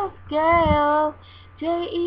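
A girl singing a pop song: one held note that wavers a little, a short breath pause, then a run of short notes on one pitch near the end.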